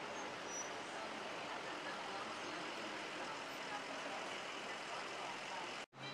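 Steady city street traffic noise with voices in the background; the sound cuts out sharply for a moment just before the end.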